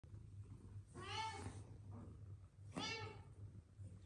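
A kitten meowing twice, each meow about half a second long and rising then falling in pitch, about a second and a half apart, while wrestling with another kitten.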